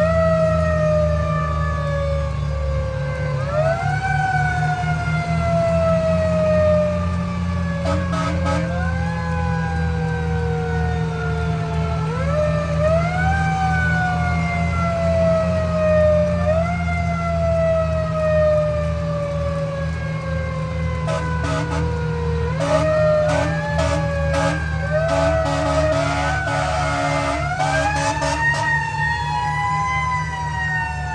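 Federal Q mechanical siren on a fire engine, wound up again and again: each time the pitch climbs quickly and then coasts down over a few seconds. A steady low engine rumble runs underneath, and short horn blasts come about eight seconds in and several more after twenty seconds.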